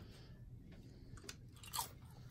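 A crisp homemade sourdough herb cracker being bitten and chewed: a few faint, sharp crunches, the loudest near the end.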